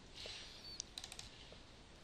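A few faint clicks from a computer mouse and keyboard, clustered about a second in, over quiet room tone.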